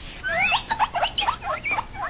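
A quick run of about ten high-pitched squeaks, several sweeping upward in pitch, lasting nearly two seconds.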